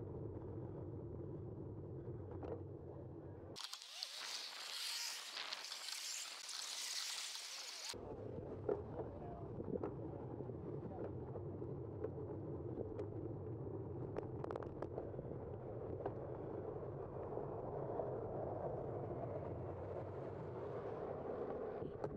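Steady wind and road rumble picked up by a bike-mounted camera's microphone while cycling, with a few light clicks. About three and a half seconds in, the low rumble cuts out abruptly for some four seconds and a bright hiss takes its place, then the rumble returns.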